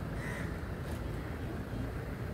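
Crows cawing a few times over a steady low background rumble.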